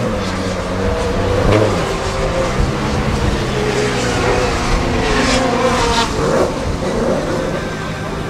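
Nissan S13 200SX's RB25DET turbocharged straight-six running at low revs, with small rises and falls in pitch from light throttle as the car creeps onto a trailer. A few short clicks or knocks occur along the way.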